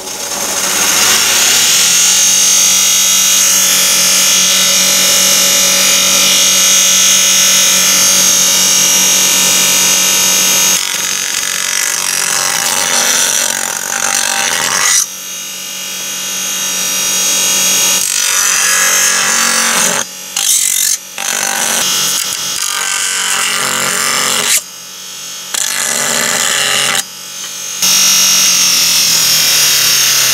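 A Clarke 6-inch bench grinder spins up, then grinds a metal part's fins down against the wheel, with a steady motor hum under a loud grinding hiss. The grinding breaks off briefly several times as the piece is lifted away, and the grinder starts winding down near the end.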